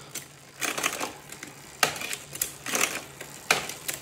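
Road bike drivetrain turned by hand on a work stand: the chain runs over the chainrings with repeated bursts of metallic clatter as the front derailleur is tested, shifting the chain between chainrings.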